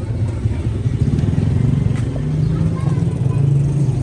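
A motor vehicle engine running with a low, steady rumble, a little stronger in the second half, with faint voices in the background.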